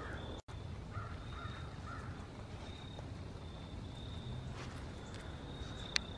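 Quiet outdoor background with a few faint, distant crow caws between one and two seconds in, a faint high tone coming and going, and a single short click near the end.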